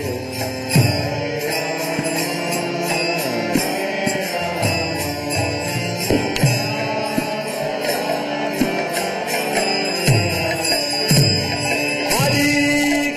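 Devotional kirtan: voices chanting a mantra with musical accompaniment, low drum strokes now and then, and jingling hand cymbals throughout.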